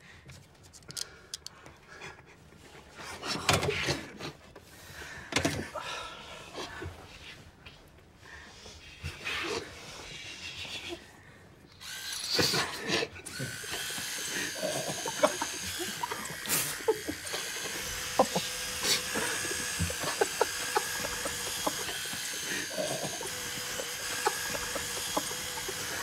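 Soft handling clicks and rustles, then about halfway through two electric toothbrushes switch on and buzz steadily with a high whine while pressed into a man's nostrils.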